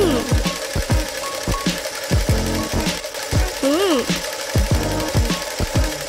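Cartoon sewing-machine sound effect, a rapid stitching with short repeated thumps about three a second, over background music. Two brief hummed voice sounds, one near the start and one about four seconds in.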